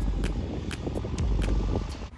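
Construction-site noise: a steady low rumble of machinery mixed with wind buffeting the microphone.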